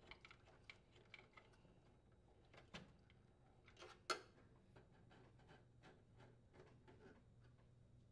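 Near silence with faint scattered clicks and ticks, two slightly louder ones about three and four seconds in: a Phillips screwdriver driving a screw into a microwave's sheet-metal fan-motor support bracket, then pulled free.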